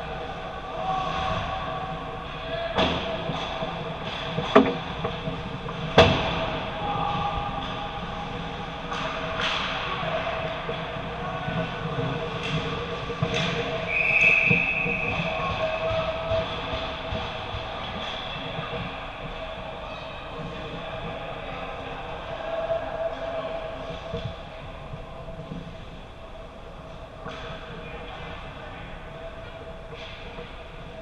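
Ice hockey play at the net: a few sharp cracks of puck and sticks against pads or boards, then a referee's whistle blows once, about a second long, roughly halfway through to stop play. A steady rink hum runs underneath.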